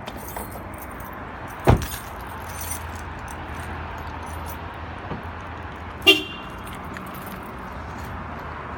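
A car door slams shut about two seconds in, then a few seconds later a short horn chirp sounds as the SUV is locked by remote, over steady low outdoor background noise.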